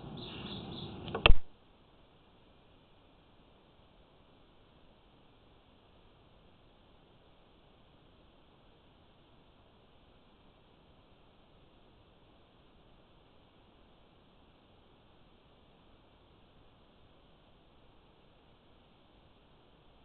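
Faint background noise for about a second, ended by one sharp click, then near silence for the rest.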